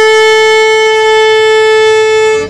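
Violin playing one long, steady bowed note, held on a single bow stroke with no change in pitch.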